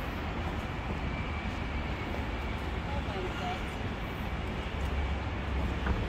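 City street ambience: a steady low rumble of traffic, with faint snatches of passersby's voices.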